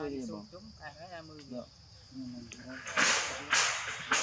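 Three loud, short crinkling rustles about half a second apart near the end, from a plastic bag of fruit being handled, over a steady high chirring of crickets.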